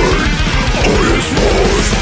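Heavy metal song with a man's harsh, aggressive vocals over a dense, loud band backing.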